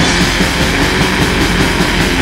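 Black metal, loud and dense, with distorted guitars over fast, unbroken drumming.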